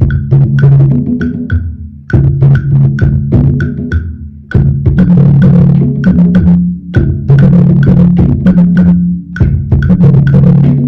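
Student drum ensemble playing a steady percussion pattern of about three strokes a second, with sharp wood-block-like clicks, over sustained low bass notes that shift in pitch every couple of seconds.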